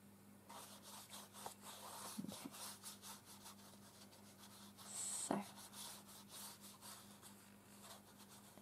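Faint swishing of a large paintbrush stroked back and forth over a paper book page, laying down a watery paint wash, over a low steady hum. There is a single sharp click a little past halfway.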